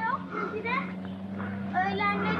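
A young child's high-pitched voice calling out in short bursts, three times, over a steady low hum.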